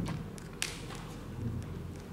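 A pen writing on a workbook page: a few short scratches and taps, the clearest a little past half a second in, over a low room hum.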